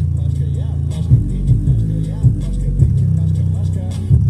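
A rap track with deep, sustained bass notes played loud through a small 4-inch woofer, with the bass line stepping between notes in a steady rhythm.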